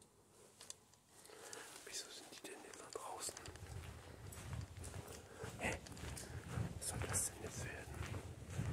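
A person whispering, with footsteps and handling knocks from a moving handheld camera underneath.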